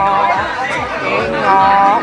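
A voice singing a Mường folk song (hát Mường) in long, held, wavering notes, with a note held near the end, over crowd chatter.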